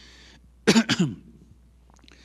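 A man clears his throat loudly, in two or three quick rough pushes, a little over half a second in.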